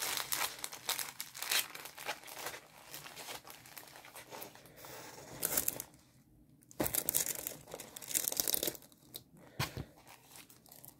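Plastic packaging of a diamond painting kit crinkling and rustling as it is handled, with a quieter gap about six seconds in, then a louder burst of crinkling.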